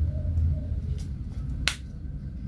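Plastic flip-top cap of a body lotion bottle being opened: a faint click about a second in, then one sharp snap near the end.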